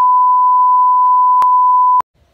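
A loud, steady 1 kHz test tone, the reference beep that goes with television colour bars, holding one pitch, with a brief click about one and a half seconds in. It cuts off suddenly at the end.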